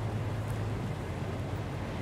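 Outdoor wind on the microphone: a steady low rumble with an even hiss above it.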